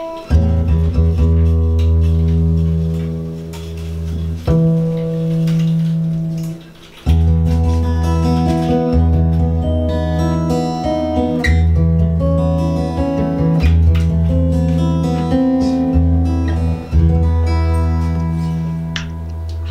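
Gibson J-45 acoustic guitar played after a fresh restring and nut rework: a strummed chord left to ring, a second one about four seconds in that dies away, then a run of picked notes moving over a steady low bass note. The strings ring on at length, which the luthier puts down to the strings now sitting on top of the nut rather than down in it.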